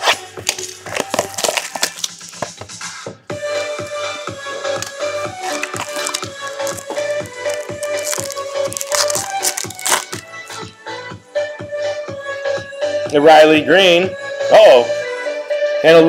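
Background music plays with a held note throughout. Over it, for the first ten seconds or so, a plastic trading-card pack wrapper crinkles and crackles as it is torn open by gloved hands. A loud wavering voice comes in near the end.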